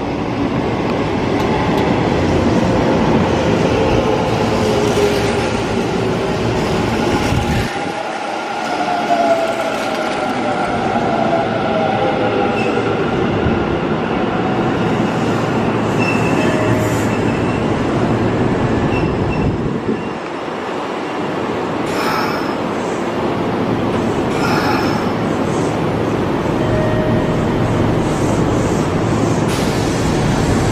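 Electric commuter trains at a station platform. A Hanshin 1000-series train runs in and slows, with whining tones falling in pitch over the first several seconds. After two abrupt breaks in the sound, a red-and-white Kintetsu train moves along the near track with steady running noise and a few short wheel squeals.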